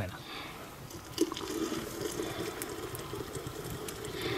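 Milk being ladled and poured in a metal pot, a steady liquid sound that starts with a clink about a second in, with faint ticks from a small wood fire.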